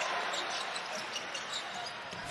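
Arena crowd noise with a basketball being dribbled on the hardwood court, a few faint bounces standing out.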